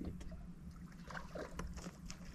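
Irregular small clicks and light water noise as a hooked fish is reeled in toward a boat, over a steady low hum.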